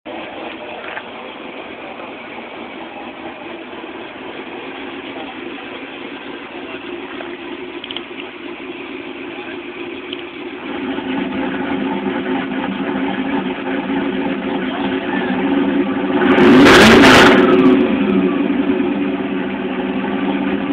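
The supercharged 402-cubic-inch V8 of a 2005 Pontiac GTO running steadily, getting louder about halfway through. About three-quarters in there is a short, loud burst as it revs, with the pitch falling away afterwards.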